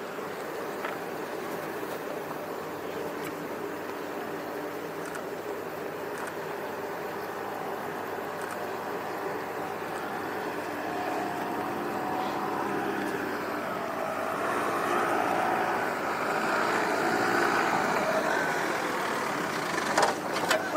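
A car's engine running as it drives a cone slalom course. It revs up and down and grows louder as the car draws nearer over the second half.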